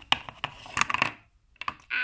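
A small plastic toy figure tapping and clicking on a wooden tabletop as it is hopped along by hand: a quick cluster of taps in the first second, then a couple more a little later.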